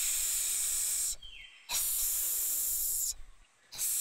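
Cartoon snake hiss, a drawn-out 'sss', heard twice: the first hiss cuts off about a second in, and the second runs from just under two seconds to about three seconds.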